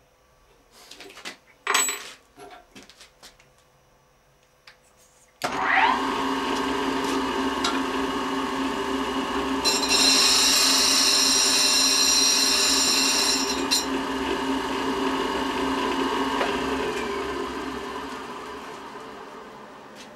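A few clicks and knocks of the grinder's sliding table being set, then the electric motor of a diamond-wheel tool grinder starts about five seconds in with a short rising whine and runs steadily. Midway, for about four seconds, a high hiss rises over it as a triangular thread-cutting lathe tool bit is ground against the diamond wheel. The motor is then switched off and winds down, fading away near the end.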